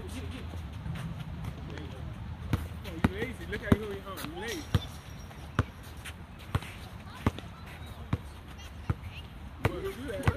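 Basketball being dribbled on a hard outdoor court: sharp single bounces about once a second from a couple of seconds in, with players' voices calling out between them.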